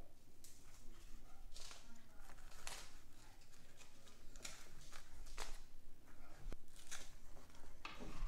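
A pencil poking holes in moist potting soil in cardboard egg-carton seed cells: a series of short taps and scrapes, about a dozen, irregularly spaced.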